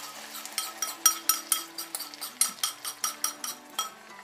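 A metal spoon clinking against a ceramic bowl as beaten eggs are scraped out into a frying pan: a quick run of ringing taps, about five a second.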